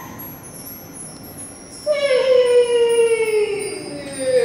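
Female solo voice singing one long note in a contemporary new-music piece, entering about halfway through and sliding slowly down in pitch.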